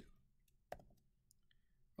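Near silence, broken by a single sharp click about three quarters of a second in and a few much fainter ticks after it.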